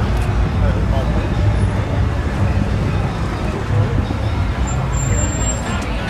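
Street traffic ambience: a steady low rumble of road traffic and idling cars under indistinct nearby voices.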